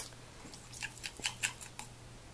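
A metal spatula clicking and scraping against the inside of a glass mug as it scoops warm, semi-liquid gelatin. One sharp click at the start, then about a second in a quick run of about eight short scrapes.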